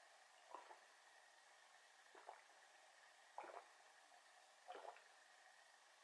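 A person gulping a drink from a glass: four faint swallows, about one every second and a half, over near silence.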